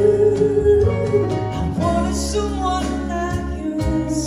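Live ballad duet: a man singing into a microphone over a small band of keyboard and electric guitar. A long held vocal note in the first second gives way to a moving melody.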